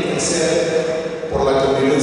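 A man speaking through a lectern microphone, his voice amplified in a large hall.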